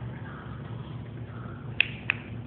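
A single sharp click, like a finger snap, near the end, over a steady low hum.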